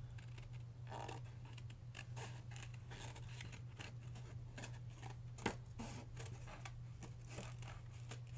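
Large pair of scissors cutting through paper and cardstock in a run of repeated, faint snips.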